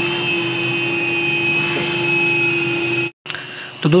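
Wet-and-dry vacuum cleaner running steadily with a high whine, vacuuming out a plastic water tank after pressure washing. The sound cuts off abruptly about three seconds in.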